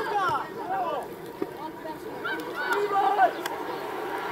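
Indistinct shouts and calls from players and onlookers across an outdoor football pitch, with a couple of short sharp knocks, one about a second and a half in and one near the end.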